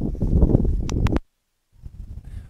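Wind and handling rumble on a Pixel Vocial Air 2 clip-on lavalier mic, with a couple of sharp clicks about a second in. The audio then cuts out abruptly to dead silence for about half a second as the wireless transmitter is switched over, and a much quieter outdoor background comes back.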